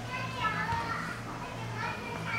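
Children's voices in the background, playing and chattering, over a low hum.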